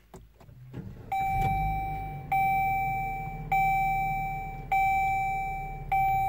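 The 2013 Dodge Journey's 2.4-litre four-cylinder engine starts by push button about a second in, flares briefly and settles to a steady idle. Over it a dashboard warning chime dings evenly about every 1.2 seconds, five times, each ding fading before the next.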